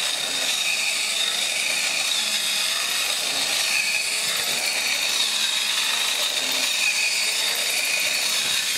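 Small battery-powered hobby motor and gearbox of a 3D-printed walking robot whirring steadily with a thin high whine, driving its lifting-foot walk and rocking body.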